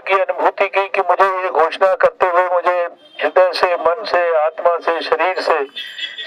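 A man speaking Hindi into a handheld microphone, with a brief pause about three seconds in.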